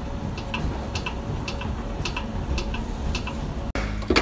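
A clock ticking: pairs of light, high clicks about twice a second over a low background hum, cut off abruptly shortly before the end.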